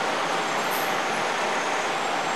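Steady outdoor background noise: an even, continuous rush with no distinct events.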